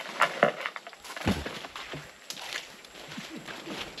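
Scattered woody knocks, crackles and leaf rustling from a long bamboo pole worked up in a coconut palm to knock coconuts down, with one dull thud about a second in.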